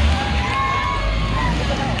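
A school bus drives close past with a low engine rumble, while people shout and cheer over it in short, held calls.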